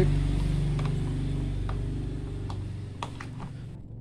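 A low, steady engine-like hum that fades away gradually and is gone near the end, with a few faint clicks over it.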